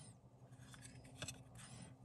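Near silence with faint rubbing and a few light clicks as fingers turn over a hard plastic coin slab, the clearest click a little past a second in.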